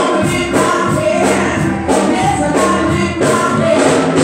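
Gospel music: a woman singing into a microphone, with choir voices and a steady beat in the accompaniment.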